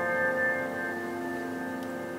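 Kemble K131 upright piano's last chord ringing out and slowly fading, with no new notes struck.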